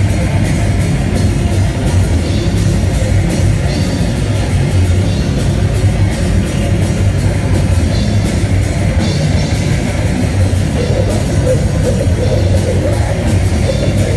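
Death metal band playing live: heavily distorted electric guitars and drum kit, loud and dense without a break.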